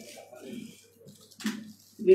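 Faint murmur of voices and room noise in a hall, with one brief louder noise about one and a half seconds in.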